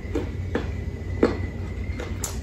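Close-up chewing of crisp, unripe green Indian mango, with about three short crunches at irregular intervals, the loudest a little past the middle, over a low steady hum.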